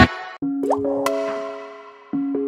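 Background music: a loud full track cuts off suddenly, and after a short gap soft held electronic notes ring on and slowly fade. Two short plucked notes sound about two-thirds of a second and a second in.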